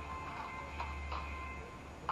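Quiet background music: a held tone with three short, light ticking notes in the first second and a half, over a steady low hum.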